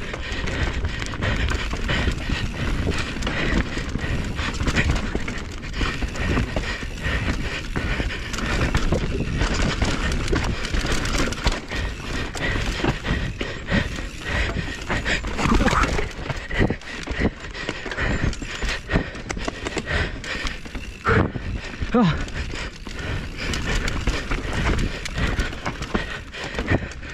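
Mountain bike descending a rough forest dirt trail at speed: a constant, irregular clatter and rattle of the bike over roots and bumps, with tyres rumbling on the dirt.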